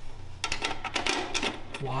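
Small steel hardware on a MIG welder's wire-spool hub: a spring and washers clicking and rattling as they are slid onto the spindle, in a quick run of clicks.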